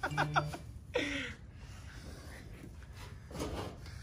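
Brief laughter, then a short murmured vocal sound about a second in. After that, faint rubbing and handling noise of hands and pliers on the fuel pump's wiring.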